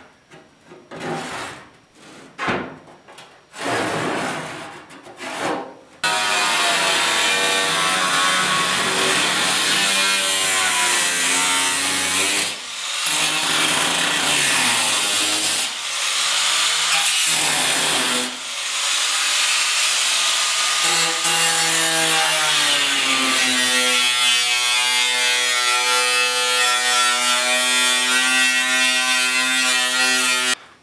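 A few short scraping strokes. Then, about six seconds in, an electric angle grinder starts and runs steadily against the rusted sheet-steel trunk floor. Its whine drops in pitch as the disc bites under load, and a few brief dips break it where the disc lifts off the metal.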